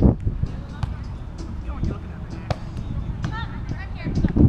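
A volleyball being hit by hand several times in a beach volleyball rally: a few short, sharp slaps, the loudest about two and a half seconds in. Distant players' voices call out near the end.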